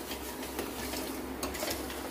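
Steel spoon stirring and scraping thick onion-tomato masala around a stainless steel pot, with a few light metal-on-metal clinks.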